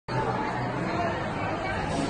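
Restaurant background chatter: many indistinct voices talking at once at a steady level.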